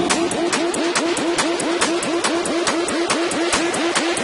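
Loud electronic dance music: a fast repeating synth figure that swoops up in pitch with each beat, over sharp ticks about four times a second.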